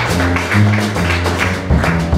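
Live jazz band playing: a plucked double bass line carries the low notes, with light drum and cymbal taps and piano over it.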